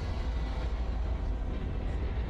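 Low steady rumble with a faint hiss above it, without speech: the ambient soundtrack of a TV drama scene set in a dim metal corridor.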